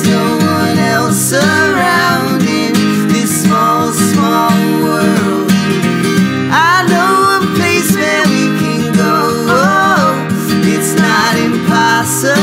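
Live acoustic song: a strummed acoustic guitar with male voices singing over it.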